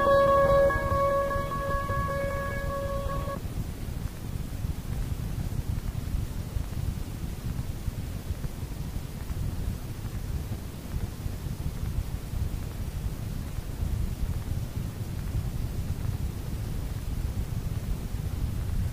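The last note of a plucked string instrument rings on and stops about three seconds in, ending the song. After that only a steady low rumbling noise from the recording remains.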